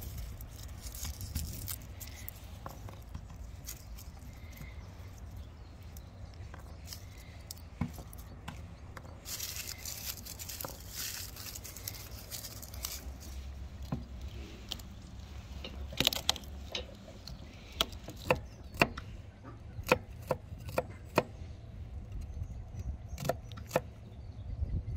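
Garlic cloves being peeled by hand: the dry, papery skins rustle and crackle. In the second half come irregular sharp knocks on a wooden board, one or two a second, as the garlic is set down and cut.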